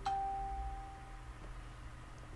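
A single chime: a ding that strikes sharply and then rings on one steady pitch, fading out after about a second and a quarter.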